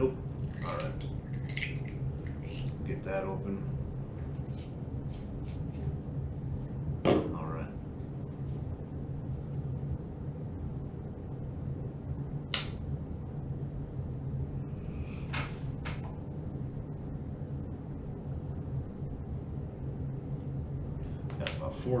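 Steady low hum of an airbrush air compressor running, with scattered small clicks and knocks of paint bottles being opened and handled, the loudest knock about seven seconds in.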